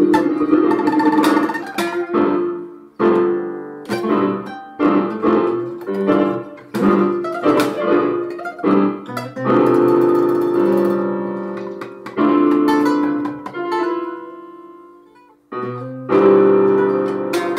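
Electronic keyboard played with both hands, in a piano-like voice: a run of struck chords and melody notes. Near the end a held chord fades away, and playing starts again just before the end.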